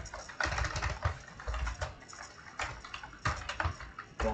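Typing on a computer keyboard: irregular runs of sharp key clicks as a filename is deleted and typed again.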